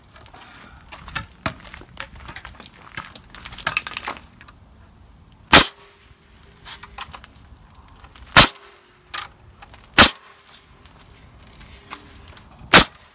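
Pneumatic framing nailer firing nails into lumber floor joists: three loud, sharp shots in the second half, a second and a half to three seconds apart. Lighter knocks of boards being handled come before them.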